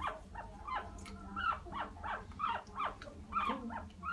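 Guinea pig squeaking in a rapid run of short calls, each falling in pitch, several a second, while it is held and rubbed during a bath.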